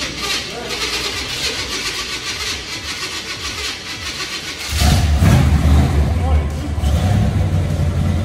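LS-swapped box Chevy V8 starting up: about halfway through, the engine catches and settles into a loud, deep, steady idle.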